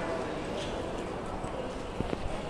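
Bus stand background: a steady low hum of distant voices and activity, with light footsteps on concrete.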